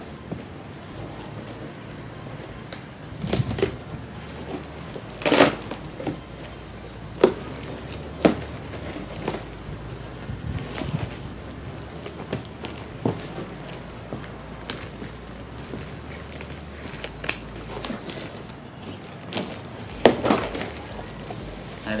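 Scissors cutting through packing tape and cardboard, with irregular sharp snips and crinkling rustles of cardboard and plastic wrap as the box is worked open.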